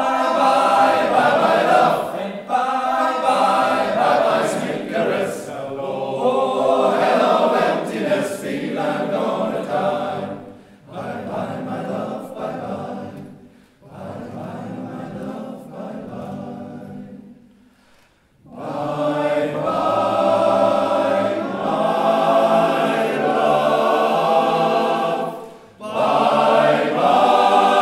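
Men's choir singing in harmony with violins and cello accompanying. It grows softer in the middle, breaks off briefly, then comes back in full.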